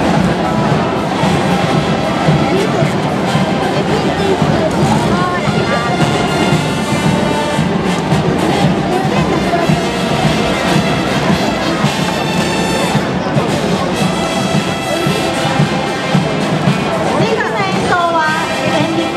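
Marching brass band playing, with trumpets and trombones, and crowd voices close by.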